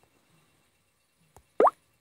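Near silence, then a faint click and, right after it, a short rising 'plop' blip near the end, as the phone's screen-recorder floating control is tapped open.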